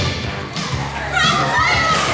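Children shouting and squealing excitedly at play, with one high, wavering shout loudest in the second half, over background music.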